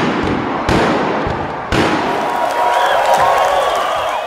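Junk-and-drum percussion ensemble striking three heavy booming hits about a second apart, followed by a sustained noisy wash with a few faint whistle-like tones.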